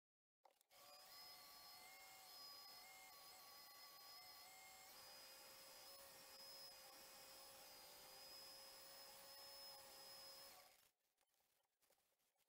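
Faint, steady whine of a wood lathe's motor running with the bowl spinning, made of several steady tones that shift slightly in pitch about five seconds in. It drops away suddenly about eleven seconds in.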